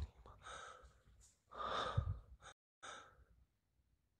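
A person breathing out heavily close to the microphone, several breathy exhales, the longest and loudest about two seconds in. The sound cuts out completely for a moment just before three seconds.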